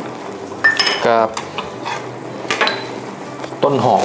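Crisp battered deep-fried sesbania flowers and sliced shallots being tossed by hand in a stainless steel mixing bowl, with several light clicks of metal on metal.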